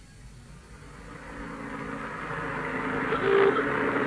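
Sound effect of a running road vehicle fading in and growing steadily louder, with a short tone about three seconds in, heard through an old radio tape recording.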